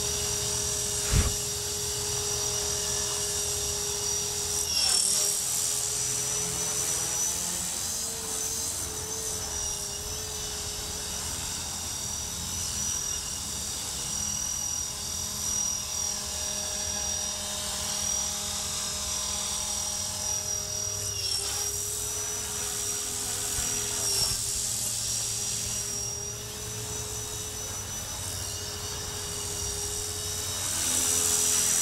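E-flite Blade 400 electric RC helicopter in flight: the steady high whine of its electric motor and spinning rotor, dipping and rising briefly in pitch a few times as the throttle changes. A single short thump about a second in.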